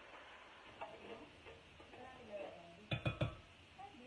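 Three quick metallic clinks close together about three seconds in: a kitchen utensil knocking against a stainless steel cooking pot.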